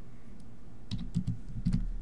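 Typing on a computer keyboard: after a quiet first second, a quick run of keystrokes in the second half.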